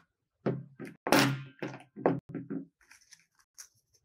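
A hot glue gun being put down on a tabletop: a run of thuds and knocks, the loudest about a second in. Faint light clicks and rustling of paper petals follow near the end.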